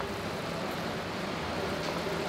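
Steady sizzling from chicken breasts frying in a pan of onion and tomato sauce.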